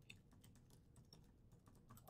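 Faint typing on a computer keyboard: a quick run of soft key clicks.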